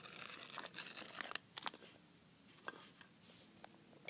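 Faint rustling and crackling of a hand handling small plastic toys and paper, with several sharp clicks in the first second and a half, then a few light ticks.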